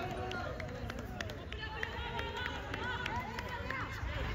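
Several voices of players and onlookers shouting and calling out across a football pitch during play, overlapping one another, with a few sharp knocks.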